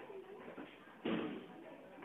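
A single sharp impact about a second in, from martial arts training in the dojo, with a short echo from the hall, over a faint murmur of voices.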